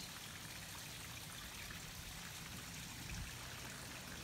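Faint, steady trickle of running water from a garden pond.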